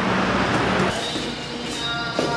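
Loud, even street noise for about the first second, likely traffic. It cuts off suddenly and gives way to a quieter stretch in which steady background music enters near the end.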